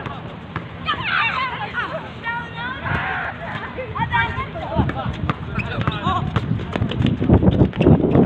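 Basketball players shouting to one another, with a ball bouncing and running footsteps on the court surface that get louder in the second half as play comes closer.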